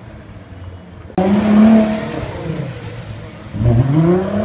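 Nissan GT-R R35's twin-turbo V6 engine accelerating. A steady engine note starts suddenly about a second in, then rises in pitch near the end.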